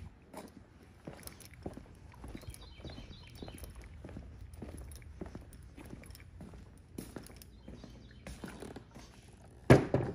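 Footsteps of work boots on a concrete floor: a run of soft, irregular steps. A loud thump comes near the end as the chainsaw is set down on the workbench.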